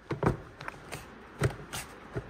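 Plastic engine airbox being wiggled and pressed down onto its rubber grommets: a few faint knocks and rubbing sounds as it seats, with no snap.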